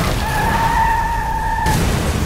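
Car tyres squealing in a steady high skid on a snowy road, the squeal cutting off near the end as a loud noisy rush takes over.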